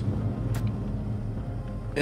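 Steady low car engine and road hum heard from inside the cabin, with a single click about half a second in.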